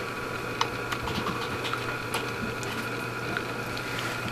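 Faint clicks and handling noise as test clips are attached to a large electrolytic capacitor's leads, over a steady low hum.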